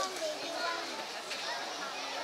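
Background chatter of several people talking at once, with children's voices mixed in.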